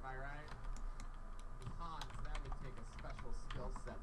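Computer keyboard keys clicking in quick, irregular taps, with talk in the background.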